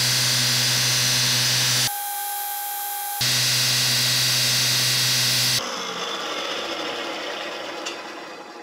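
Belt grinder running steadily while the flat of a steel chef's knife blade is polished on its abrasive belt, with short breaks between edited clips. A little over halfway through the grinder's note changes and then fades away steadily as it winds down.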